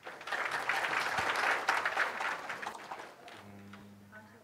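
Audience applauding, starting at once, then dying away about three seconds in. A steady low hum comes in near the end.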